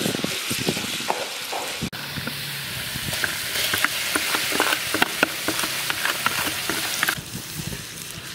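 A paste sizzling in hot oil in a large wok, stirred with a wooden spatula. About two seconds in, chopped chillies, shallots and lemongrass go into the pan and the frying crackles sharply until the sizzle dies down about a second before the end.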